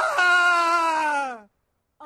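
A person's long, drawn-out groan in a voiced cartoon scene, its pitch sliding steadily down, cut off abruptly about one and a half seconds in.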